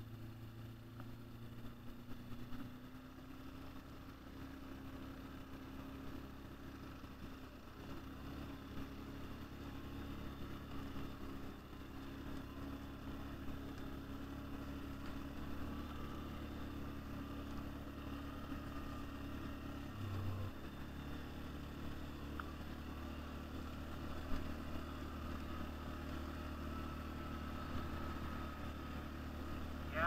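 ATV engine running steadily while riding over a field, heard close from the machine the camera is mounted on, with a brief change in the engine note about two-thirds of the way through.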